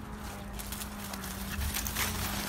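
Footsteps of a person running on grass, getting a little louder near the end, over a steady low hum.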